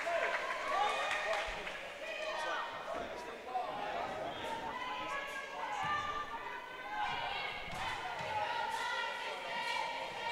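Background chatter of voices in a gymnasium, with a few bounces of a basketball on the hardwood court as a free throw is set up.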